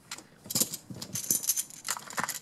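Plastic-framed Magformers magnetic tiles clicking and clacking against each other as they are handled and snapped onto a toy vehicle model: a quick, irregular series of light clicks.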